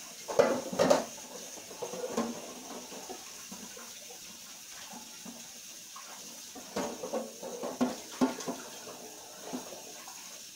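Kitchen tap running into a sink while a cooking pot is rinsed, with knocks and clatters of the pot in the first second and again about seven to eight seconds in.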